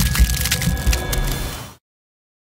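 Crackling, splintering sound effect made of rapid sharp clicks over low thumps about every half second, cutting off abruptly into silence near the end.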